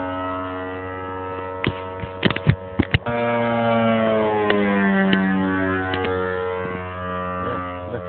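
Engine of a large radio-controlled aerobatic model plane droning in flight, its pitch gliding and falling as the plane passes and manoeuvres. Several sharp knocks come about two to three seconds in.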